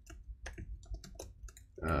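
Computer keyboard being typed on: a quick, irregular run of key clicks as terminal commands are entered by hand.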